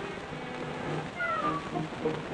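Cartoon sound effect: a high, whine-like cry that glides down in pitch from a little past halfway, over faint low notes.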